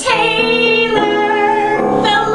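A woman singing solo into a microphone, starting a long held note right at the start, over piano accompaniment.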